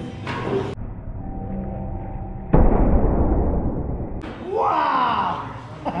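Thrown axe striking a wooden target board with one loud, sudden thud about two and a half seconds in, followed by a man's rising and falling shout of triumph.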